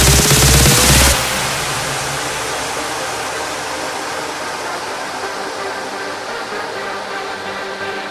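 Big room house track: the pounding four-on-the-floor beat with a rising synth sweep cuts off about a second in. Held synth chords remain over a fading white-noise wash, with the kick and bass gone, as the track drops into a breakdown.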